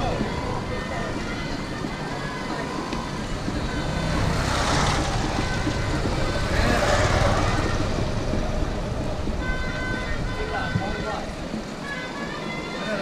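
Busy street ambience of motor traffic and background voices, with two louder swells of passing noise about four and seven seconds in.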